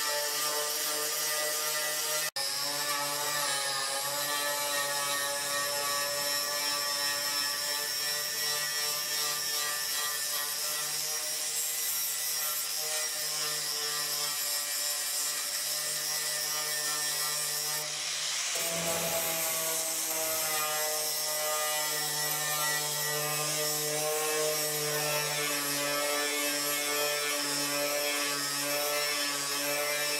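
Corded electric sander running steadily against the steel body panels of a car shell, stripping the paint, with a constant motor whine. It breaks off for an instant about two seconds in and gives a short rough burst near the middle, after which the whine runs on at a slightly different pitch.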